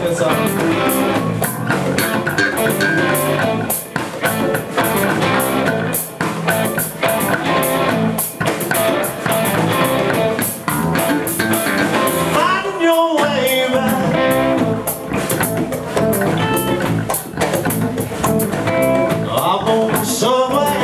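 Live band playing a blues song: electric guitars, bass and drum kit, with a singer. About thirteen seconds in, the bass and drums drop out for a moment.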